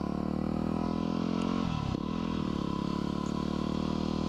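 2010 Yamaha WR250R's 250 cc single-cylinder four-stroke engine running steadily while the bike is ridden along the road. Its note dips and climbs back once a little under two seconds in.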